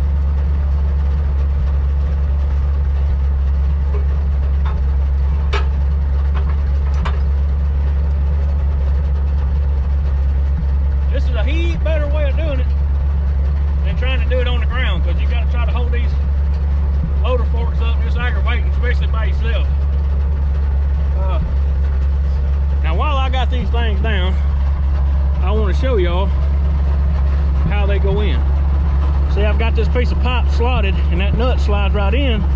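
Old side-loader log truck's engine idling, a steady low hum that holds even throughout, with a few light metallic clicks about five to seven seconds in.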